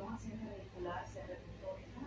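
Faint, indistinct speech in the background over a steady low hum; no carving sound stands out.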